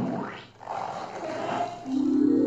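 An animal-like roar in the animation's soundtrack, opening with a sharp rise in pitch.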